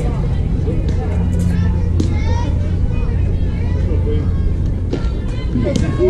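Scattered distant voices and calls from players and spectators over a steady low rumble, with a few faint clicks.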